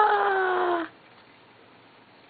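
A baby's long, drawn-out wailing call, held on one pitch that sinks slightly, which stops abruptly just under a second in.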